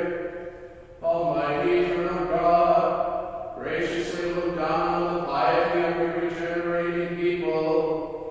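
A solo male voice chanting a liturgical prayer in long, level sung phrases, with short breaths between them.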